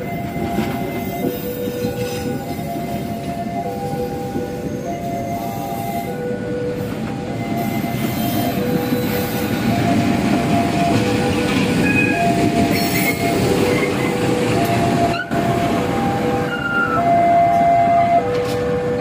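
CC 203 diesel-electric locomotive moving slowly past, its engine rumble growing louder about halfway through, with a few short wheel squeals. Over it, a two-tone warning chime repeats steadily, alternating between a lower and a higher note.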